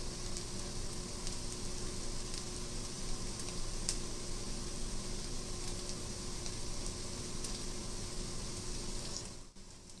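TVP crumbles frying nearly dry in a stainless steel skillet: a steady sizzle with scattered small crackles. The shift from sizzling to crackling is the sign that the water has boiled off and the TVP is browning, done or nearly done.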